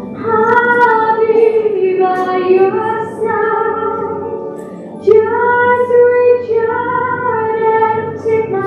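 A woman singing a song in long held notes that glide between pitches; a new, louder phrase begins about five seconds in.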